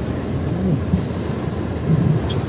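Heavy rain falling, a steady, even rushing noise.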